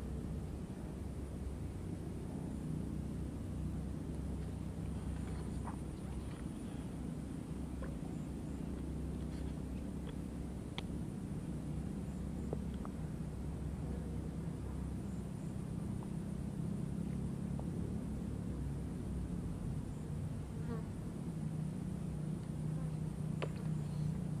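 Steady buzzing of insects, with a faint, high, continuous drone above it and a few small clicks.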